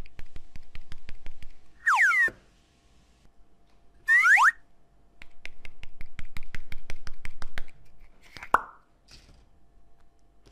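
Small plastic modelling-dough tubs handled and opened: runs of quick plastic clicks and taps. Two loud plops come about two and four seconds in, each a short sound quickly falling in pitch, and a shorter plop follows near the end.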